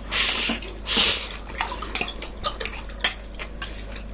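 Close-miked eating of pad thai noodles from a metal bowl with a spoon: two loud slurps in the first second and a half, then a scatter of spoon clicks and scrapes against the bowl.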